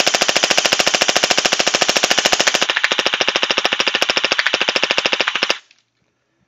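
Anstoy AKM-47 electric gel blaster firing on full auto, a fast, even rattle of shots that lasts about five and a half seconds and then stops sharply.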